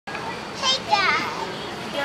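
A toddler's high-pitched vocalising: two short wordless calls, about half a second and one second in, the second bending up and down in pitch.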